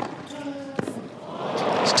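Tennis ball struck by rackets in a rally: two sharp hits about a second apart. Crowd noise then swells near the end as the point is won.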